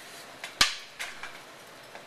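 Prop lightsaber blades clashing in a staged sword fight: a couple of sharp clacks about half a second in, the second the loudest, two more around one second, and a faint knock near the end.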